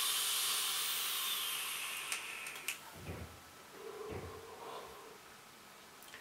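Sub-ohm e-cigarette dripper, its coil at about 0.25 ohms and 39 watts, fired during a long draw: a loud hiss that slowly fades over about three seconds. Softer breathy exhaling follows, with a short low hum about four seconds in.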